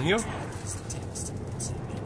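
Road noise inside a moving car: a steady low drone of engine and tyres, with a few short whooshes as oncoming cars pass.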